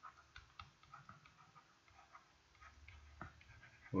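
Faint, scattered ticks of a stylus tapping and sliding on a pen tablet while handwriting.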